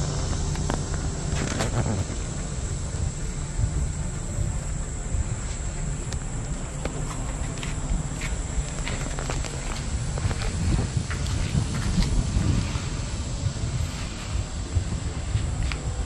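Outdoor background noise: an uneven low rumble with a thin, steady high-pitched whine and a few faint clicks.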